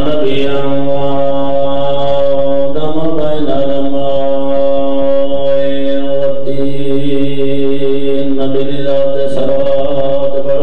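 A man chanting in long drawn-out held notes, each held for several seconds, stepping to a new pitch about three seconds in and again near seven seconds.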